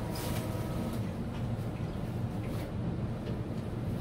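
Steady low rumbling hum, with a few faint clicks as the hinged clamshell lid of a glass-fusing kiln is lifted open.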